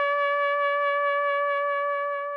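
A trumpet holding one long, steady note that fades out near the end.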